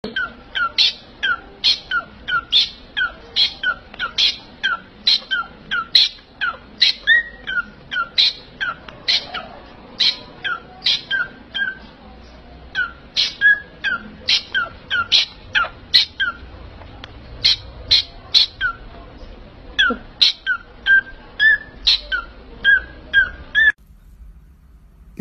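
A small parrot calling over and over, short sharp chirps that each drop steeply in pitch, about two a second, with a brief pause about halfway through.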